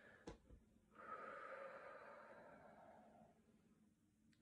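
A heavily pregnant woman breathing out slowly through a labour contraction: a faint click, then one long, faint exhalation of about two seconds that slowly fades.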